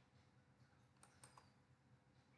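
Near silence, broken by three or four faint computer mouse clicks in quick succession about a second in.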